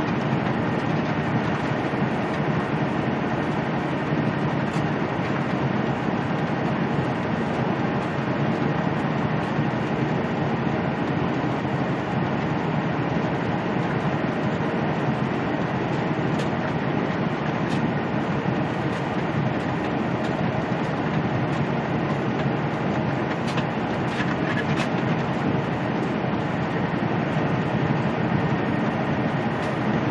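Semi-truck cruising at highway speed, heard from inside the cab: a steady drone of the diesel engine mixed with tyre and road noise.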